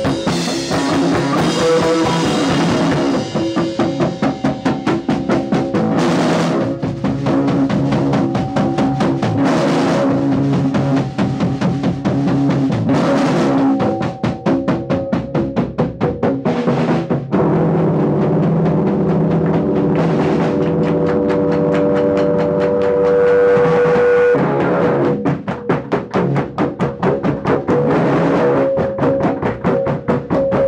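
Loud live rock played on an electric bass and a Sonor drum kit, with fast, driving drum strokes. Partway through, the drums ease off while long held notes ring for several seconds, then the fast drumming comes back in.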